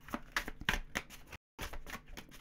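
A deck of tarot cards being shuffled by hand: a quick, irregular run of light card clicks and riffles, broken by a brief dead gap just after the middle.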